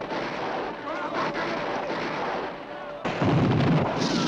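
Film battle sound effects: a dense crackle of rapid gunfire with faint shouts, then a sudden louder, deeper volley of blasts about three seconds in.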